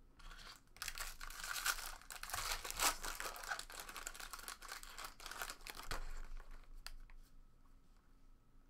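A foil trading-card pack being torn open and crinkled by hand: a dense crackling rustle that starts about a second in and lasts about five seconds, followed by a few light clicks.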